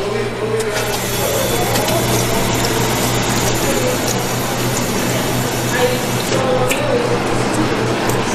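Drinking fountain running, its water stream making a steady rushing sound over a steady low hum.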